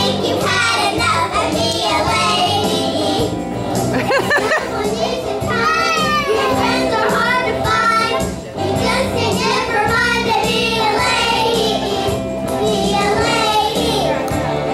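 Group of young children singing along with music.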